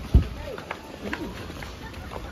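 Footsteps going down concrete steps, with a heavy thump just after the start. Scattered voices of people nearby.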